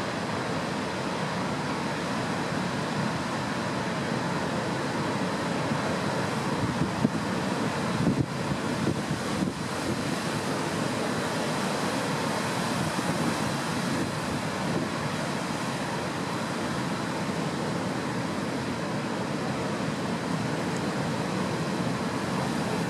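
Heavy sea surf breaking around rocks, a steady rush of noise that swells slightly now and then, with wind on the microphone.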